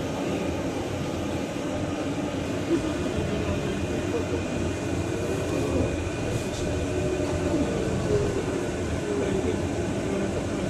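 Cabin noise on the upper deck of a battery-electric double-decker bus on the move: a steady rumble of road and running noise with a faint thin high whine. Passengers can be heard talking quietly underneath.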